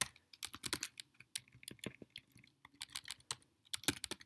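Typing on a computer keyboard: a quick, irregular run of key clicks as a variable name is deleted and retyped.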